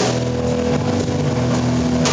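A rock band playing: electric guitars and bass holding long chords, with a sharp drum-and-cymbal hit at the start and another at the end.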